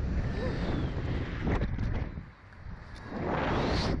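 Wind rushing over the microphone of a camera on a slingshot ride capsule as it is flung through the air. The rushing drops away for a moment about two and a half seconds in, then builds again.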